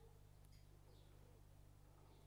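Near silence: room tone with a faint steady low hum and a few faint, short high chirps.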